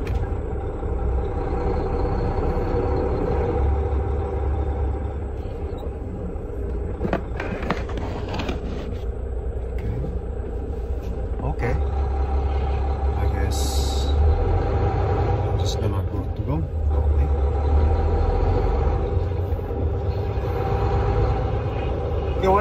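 A semi truck's engine running at low speed, heard from inside the cab as a steady low drone while the truck creeps forward. A few light clicks and one short hiss come about two-thirds of the way through.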